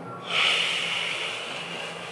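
A man breathing out heavily through his nose after crying; the breath starts about a third of a second in and fades away slowly.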